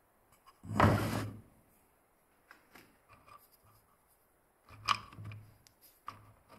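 Wooden parts being handled on a wooden workbench: a short scraping rush about a second in, then scattered light clicks and taps. Near the end, fluted wooden dowels clatter as a hand rummages through them in a small plywood box.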